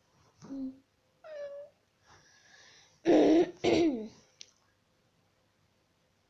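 A young girl making short wordless vocal sounds in several bursts, the loudest two a little past the middle, then a brief click.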